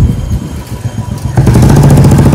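Motorcycle engine running as it passes close by, suddenly louder about one and a half seconds in.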